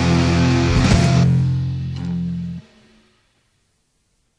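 Heavy hardcore band with distorted electric guitar and bass ending the song: a last hit about a second in, then a held chord that rings and cuts off abruptly about two and a half seconds in.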